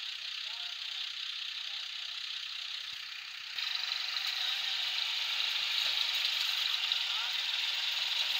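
Diesel tractor engine running as the tractor drives and turns through soft mud, getting louder about halfway through.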